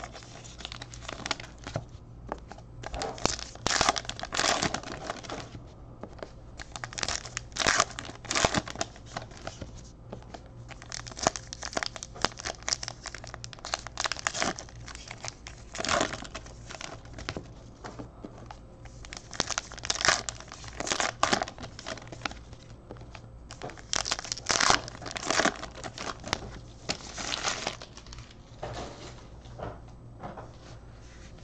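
Trading card pack wrappers being torn open and crinkled in irregular bursts, one after another.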